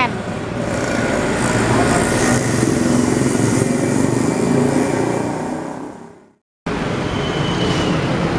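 Road traffic noise from a passing motor vehicle, swelling in the first second, holding steady, then fading out about six seconds in. The sound cuts off briefly there, and a steady background noise follows.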